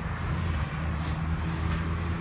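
A steady low motor hum, like a nearby idling or passing road vehicle, with a couple of light footfalls on grass.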